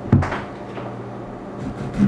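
Cubes of raw lamb set down on a bamboo cutting board: a soft thump on the wood just after the start, then a few fainter light knocks.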